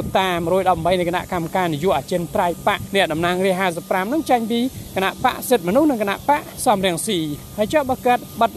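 Speech only: one voice talking continuously in Khmer.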